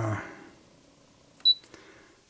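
A single short, high-pitched beep from the Brother Innovis 2800D embroidery machine's touchscreen as a button on it is tapped, about three-quarters of the way in, with a few faint clicks around it.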